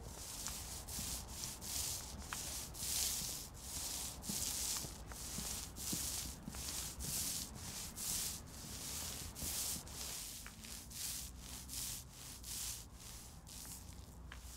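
Long-handled brush scrubbing tarmac restorer coating into the tarmac surface, in rhythmic scratchy back-and-forth strokes about two a second.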